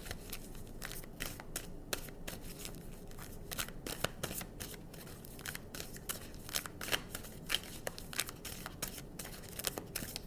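A deck of tarot cards being shuffled by hand: a continuous run of irregular soft clicks and flicks as the cards slide and slap against each other.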